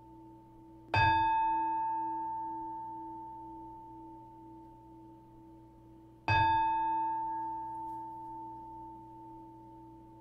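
Meditation bowl bell struck twice, about a second in and again about six seconds in. Each strike rings on, a low and a higher tone together, fading slowly, marking the close of the talk. The fading ring of an earlier strike carries into the start.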